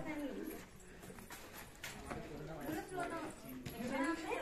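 Faint voices talking, with a couple of soft knocks about halfway.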